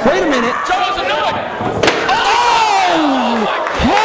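A sharp slam about two seconds in, a folding chair striking a wrestler, with the crowd's long falling shouts around it.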